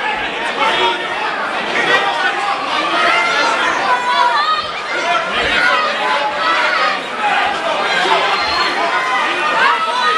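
Crowd of fight spectators calling out and shouting encouragement, many voices overlapping at once with no single voice standing out.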